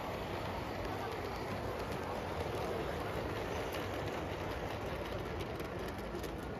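LGB G-scale model train running past on the layout's track: a steady rolling rumble from its motor and wheels, with light clicks that come more often in the second half.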